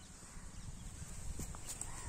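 Faint footsteps and rustling in grass, with a few light knocks, growing slightly louder over the two seconds.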